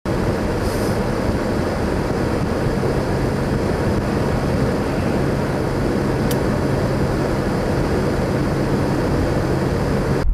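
Steady highway traffic noise with a low engine hum underneath, and a single sharp click about six seconds in.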